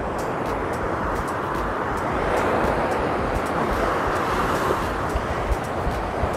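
Ocean surf breaking and washing up the beach: a steady rush of water that swells through the middle and eases off near the end.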